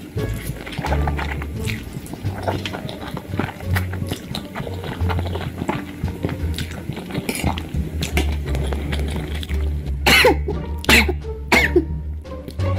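Close-up slurping and wet chewing of spicy instant noodles over background music with a steady bass line. Near the end come a few loud coughs and strained vocal sounds, a reaction to the chilli heat.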